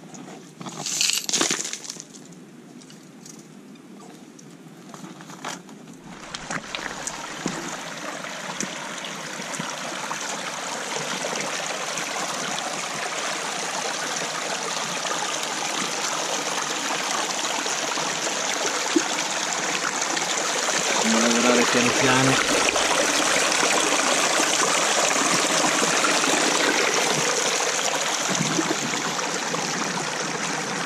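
Shallow stream water running over stones close to the microphone, swelling from about six seconds in to a loud, steady rush. A few sharp knocks come near the start.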